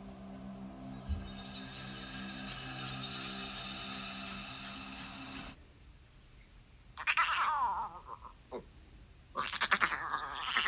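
A held musical chord plays for about five seconds and then cuts off suddenly. After a short hush come two loud animal-like cries: the first falls in pitch, and the second, near the end, is longer and rougher.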